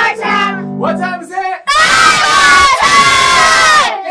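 The end of a group song fades out on held notes, then a group of children shouts together in one long, loud cheer lasting about two seconds, cut off sharply just before the end.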